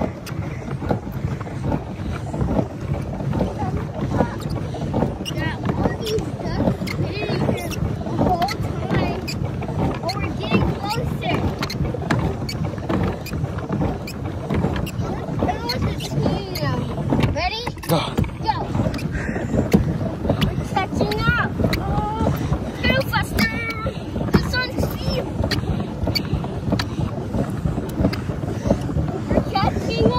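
Pedal boat under way: its paddle wheel churns the water in a steady wash, broken by frequent small knocks, with some wind on the microphone.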